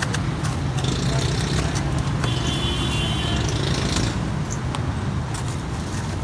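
Busy street-stall background: a steady low motor hum with indistinct voices and scattered light clinks. A brief high-pitched tone comes in about two seconds in and stops about a second later.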